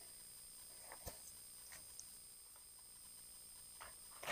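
Near silence, with a few faint brief clicks.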